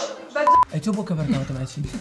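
A single short electronic bleep, one steady high tone lasting a fraction of a second, about half a second in, followed by a low-pitched voice.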